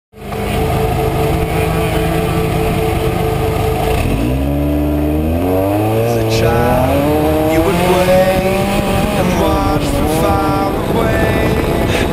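Off-road race truck's engine running steadily, then picking up revs in rising steps from about four seconds in as the truck accelerates away through the gears.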